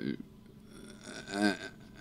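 A man's short, hesitant "uh" about a second in, with a falling pitch, in a pause of otherwise quiet room tone.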